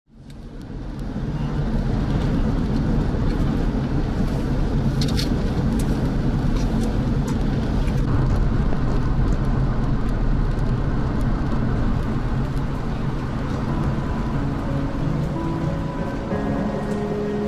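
A steady, even rushing noise like rain, fading in over the first two seconds, with a few sharp ticks about five seconds in. Steady musical notes come in near the end.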